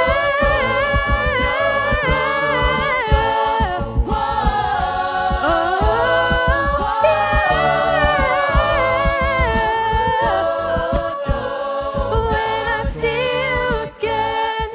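A cappella group singing: a female lead voice sings long, gliding held notes over sustained backing harmonies, with a steady vocal-percussion beat underneath.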